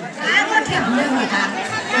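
People talking, several voices chattering close by.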